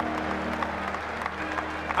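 Audience applauding, with soft music of steady held notes underneath.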